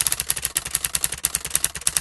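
Typewriter-style clicking sound effect: a rapid, even run of sharp clicks, about a dozen a second, accompanying on-screen text being typed out.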